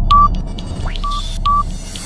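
Electronic countdown sound effect: short high beeps over a steady low drone with faint ticks. One beep comes at the start and two close together in the second half, with a brief rising sweep just before them.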